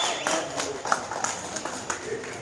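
A run of sharp, unevenly spaced taps, about three a second, with voices in the background.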